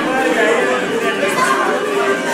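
Several people talking at once: a steady hubbub of overlapping voices in a crowded room.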